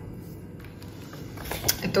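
Quiet room tone with a few light handling clicks about a second and a half in, then a woman begins to speak at the very end.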